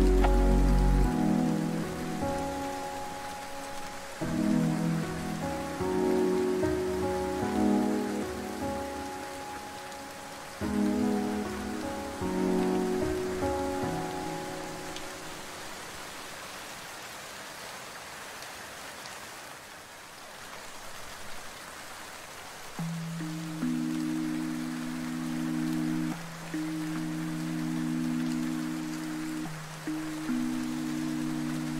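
Steady rain ambience under lo-fi hip-hop music. Chords and bass play for the first half, then fade out about fifteen seconds in, leaving the rain alone. Slow, held chords come in about twenty-three seconds in.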